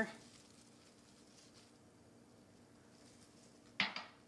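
Quiet room tone with a faint steady hum while mint leaves are picked, then, near the end, a single short knock as a potted mint plant is set down on the counter.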